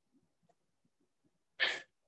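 A single short, sharp burst of breath close to the microphone, sneeze-like, about a second and a half in, after near silence.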